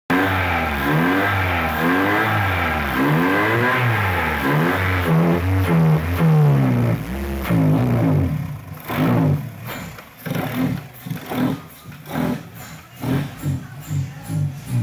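2012 Chevrolet Malibu's 2.4-litre four-cylinder engine running and being revved up and down repeatedly, about once a second. After about eight seconds the revving gives way to rhythmic background music.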